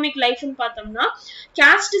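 Only speech: a woman lecturing continuously, with a brief pause near the end.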